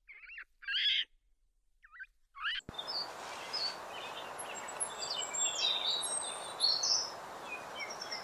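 A few short, high calls from Barbary macaques, the loudest about a second in, with silence between them. After a sudden cut, many short high bird chirps run over a steady outdoor hiss.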